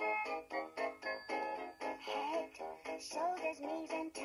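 Fisher-Price interactive plush puppy toy playing a children's song through its small built-in speaker: a quick electronic melody of short notes, with the toy's recorded voice singing over it from about two seconds in.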